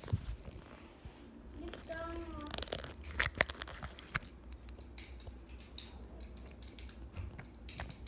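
Handling noise from a phone being moved and set down: rustling, scattered clicks and knocks, the sharpest about three and a half seconds in. A brief voice sound about two seconds in.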